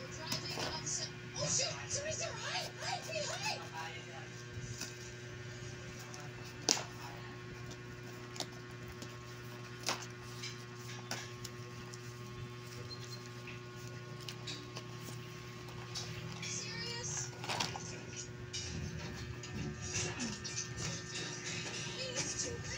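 A small cardboard box being cut open with scissors and unpacked: scattered rustling of cardboard and packaging, with a few sharp clicks and knocks, the sharpest about seven and ten seconds in. Beneath it runs steady background music with voices.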